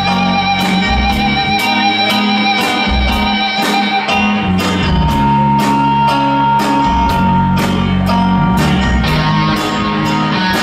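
Live rock band playing an instrumental passage: electric guitars over bass and drums, with a steady beat of about two drum hits a second and no singing. A long held lead note sounds from about halfway through.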